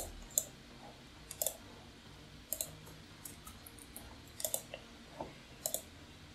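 Quiet computer mouse clicks and keyboard key presses, a dozen or so short clicks spread through, several in quick pairs like double-clicks.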